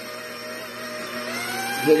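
Stand mixer's motor running steadily with its wire whisk beating cake batter in a steel bowl; the hum climbs in pitch and grows a little louder in the second half as the speed is turned up.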